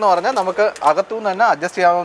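A man speaking continuously, talking without a pause.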